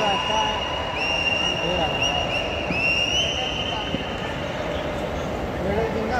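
A high, steady whistle sounded in a run of long notes back to back, each with a small upward bend at its start, stopping just before four seconds in, over a constant murmur of voices.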